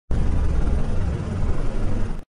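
A steady, noisy rumble heavy in the bass, the sound effect laid under an animated logo intro; it starts abruptly and cuts off suddenly.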